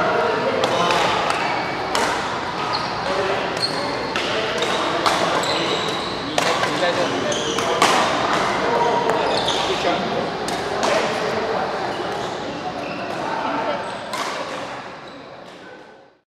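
Doubles badminton rally in a large echoing hall: repeated sharp cracks of rackets hitting the shuttlecock and short high squeaks of shoes on the court mat, over a steady babble of voices. Everything fades out near the end.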